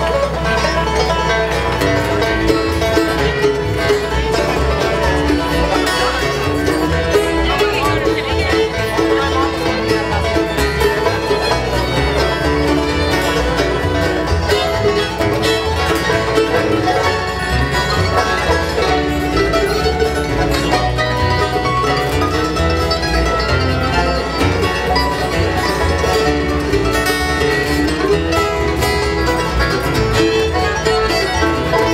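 A bluegrass band playing a tune together: banjo rolls, fiddle, mandolin, acoustic guitar and upright bass.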